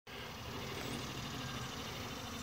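Steady hum of a large crowd of honeybees buzzing around open sugar-syrup feeders.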